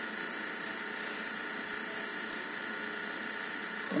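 Steady background hum and hiss, even throughout, with no distinct sounds standing out.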